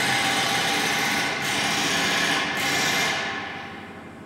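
A steady, fast mechanical rattle like a small motorised tool running, fading out over the last second.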